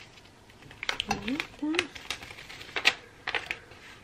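Paper backing sheet crackling and crinkling as it is lifted and handled off freshly ironed iron-on vinyl, in irregular crisp clicks, with a brief hum of a voice about a second in.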